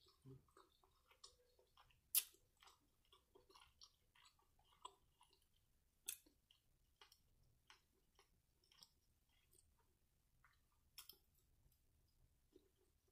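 Faint chewing of soft food, with small wet mouth sounds and a few sharp clicks, the loudest about two seconds in.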